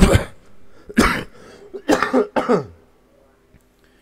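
A man coughing: a sharp cough at the start, another about a second in, then a longer voiced cough and throat-clearing around two seconds in.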